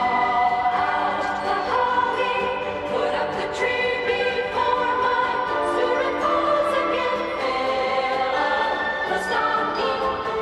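Christmas music: a choir singing sustained, smoothly moving notes over an orchestra.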